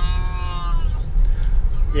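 A person's drawn-out vocal sound, slightly falling in pitch and lasting under a second, over the steady low rumble of a car cabin.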